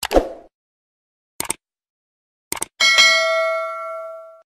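Subscribe-animation sound effects: a pair of quick mouse clicks with a short pop, two more pairs of clicks about a second apart, then a notification-bell ding a little before the end that rings on with several tones and slowly fades.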